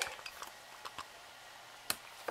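Handling noise at a hobby desk: a few scattered light clicks and taps, the sharpest near the end.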